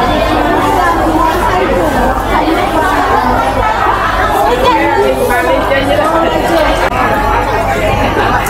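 Several voices talking over one another: the chatter of a busy market crowd.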